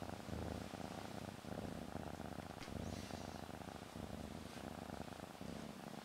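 Domestic cat purring steadily, a low rhythmic rumble, while being handled.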